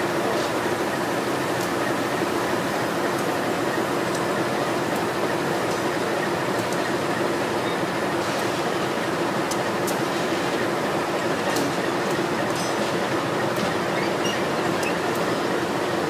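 General Electric diesel-electric locomotive engines running steadily during shunting, a constant low hum with a few faint light clicks.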